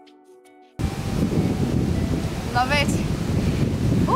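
Soft background music that cuts off under a second in, giving way to loud wind buffeting the camera microphone. A brief pitched vocal sound is heard about midway.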